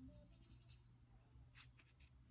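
Faint scratchy strokes of a watercolour brush on paper, two short runs of them, about half a second in and again near the end, over a low steady hum.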